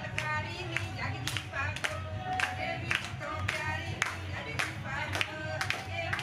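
Group of women singing a Punjabi wedding folk song, kept in time by rhythmic hand claps about twice a second.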